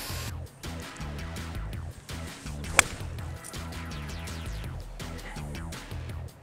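Background music, with one sharp crack about three seconds in: a golf club striking the ball.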